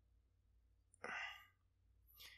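A man's short, breathy sigh about a second in, between near silence.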